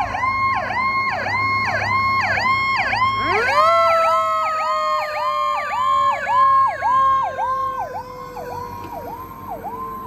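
Fire engine siren sounding as the truck pulls out: an electronic siren warbles with quick repeated dips, about three a second. About three seconds in, a mechanical siren winds up, then slowly winds down in pitch. Both grow fainter near the end as the truck drives away.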